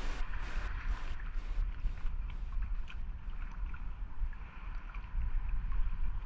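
Wind buffeting the microphone in a low rumble, with small waves lapping and trickling in shallow seawater, giving scattered little splashes and drips.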